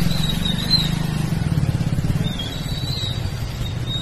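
A vehicle engine idling close by: a steady low rumble with a fast, even pulse. A faint high warbling tone sits above it.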